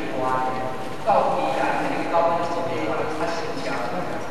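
Speech only: a person lecturing in a hall, talking in short phrases.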